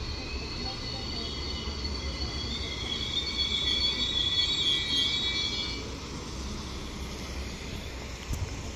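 An Alstom Coradia LINT 54 diesel multiple unit pulling in and braking, with a high multi-tone squeal that swells and then stops about six seconds in, over the train's low rumble.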